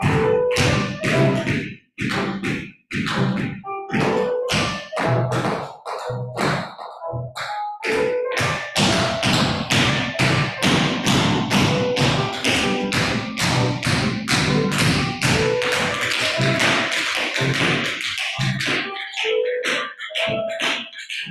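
Tap shoes striking a hard floor in quick rhythmic footwork by two dancers, over recorded music. The taps come thickest and fastest through the middle and later part.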